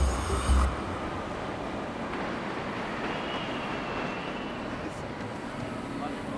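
A bit of music stops less than a second in, leaving the steady background noise of a busy railway station: trains and crowd blending into an even hubbub.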